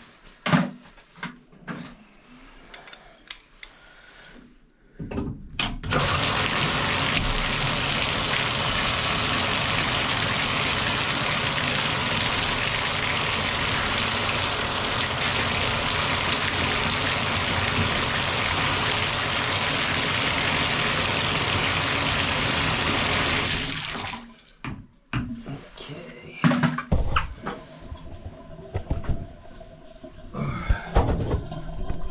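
Water running steadily from a bathtub spout into the tub, as a single-handle Moen valve with a freshly fitted 1225B cartridge is tested. It comes on about five seconds in and is shut off about eighteen seconds later. A few knocks and handling clicks come before and after it.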